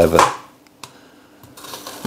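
A man's voice trails off at the start, then a chef's knife quietly cuts into an onion, with two faint taps of the blade on a plastic cutting board.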